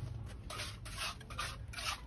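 Bare hand sweeping dry cement powder across a perforated metal jali mould plate: about four quick, rough rubbing strokes in the second half.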